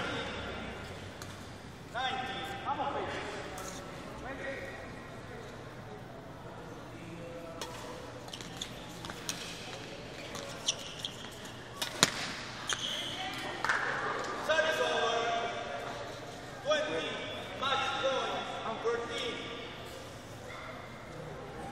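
Sharp cracks of badminton rackets striking the shuttlecock during a rally, about a second apart through the middle of the stretch, ringing in a large hall. Voices from the crowd and players rise around them near the start and again toward the end.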